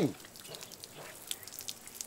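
A voice trails off at the very start, then a quiet stretch with a few faint, light clicks and ticks.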